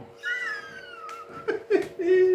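A cat meowing once, a single long call that falls in pitch, followed near the end by two sharp knocks.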